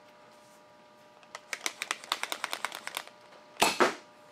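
Modified Nerf blaster's mechanism clicking in a quick run of about eight clicks a second for nearly two seconds, then the blaster firing a dart with one sharp, loud pop near the end.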